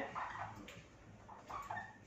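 Faint, short squeaks of a marker pen writing on a whiteboard, a few strokes near the start and again about a second and a half in.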